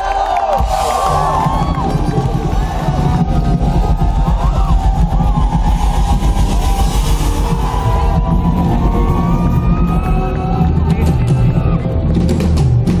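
Live folk-fusion band starting a song: bass guitar comes in about half a second in under sustained electric guitar lines, while crowd whoops and cheers fade out near the start.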